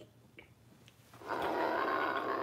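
A woman's drawn-out growling roar, imitating the Hulk, starting about a second and a half in after a near-quiet moment.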